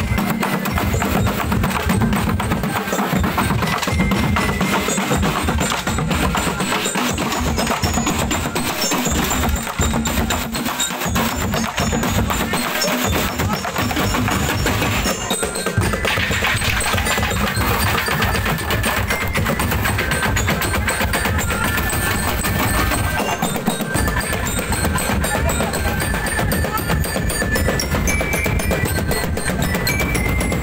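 Street percussion band beating plastic barrels and drums in a fast, continuous rhythm, with high bell-like notes ringing over the beat.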